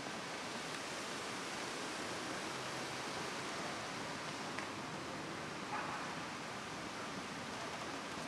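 Steady outdoor background noise, an even hiss with no speech, with a faint click about halfway through and another faint brief sound near six seconds in.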